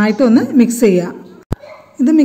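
Speech that trails off about a second in, followed by a single sharp click.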